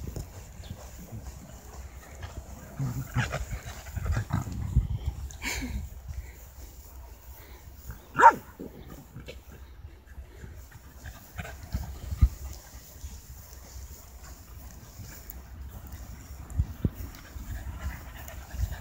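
Corgis at play on grass, with one short, sharp bark about eight seconds in, the loudest sound. A low rumble runs underneath.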